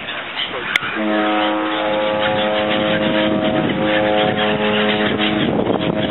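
A large ship's horn giving one long blast, several steady tones sounding together as a chord. It starts about a second in, lasts about four and a half seconds, and some of its tones drop out before the rest.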